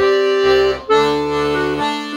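Castagnari Handry 18 G/C diatonic button accordion (melodeon) playing a chromatic passage: held right-hand notes over left-hand bass and chord notes that stop and start. The notes change at a short break just under a second in.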